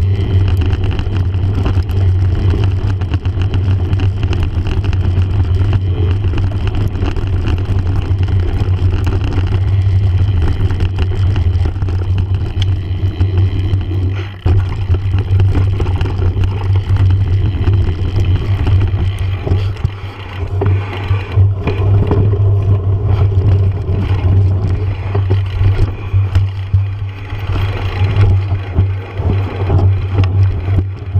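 Mountain bike riding fast down a dirt singletrack, heard close up: a steady heavy rumble of wind on the microphone and knobby tyres on dirt, with rattles and knocks from bumps, more of them in the second half.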